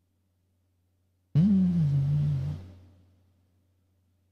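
A man's short wordless vocal sound, a hum or groan that starts suddenly about a second in, dips in pitch, holds and then trails off. A faint steady low hum lies under it.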